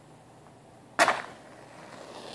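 A wooden match struck once on a matchbox's striker strip about a second in: a sudden sharp scrape as the head catches and flares, fading over about half a second.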